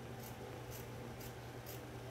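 Scissors cutting through quilted cotton fabric: faint, short snips about twice a second over a steady low hum.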